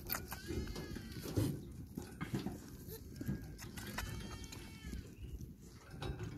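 A goat kid bleating twice, each call about a second long: the first near the start, the second about four seconds in.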